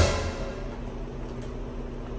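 Background music with sustained notes. It opens with a loud hit that fades away over about half a second.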